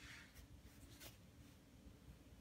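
Near silence: room tone with a couple of faint brief clicks, about half a second and a second in.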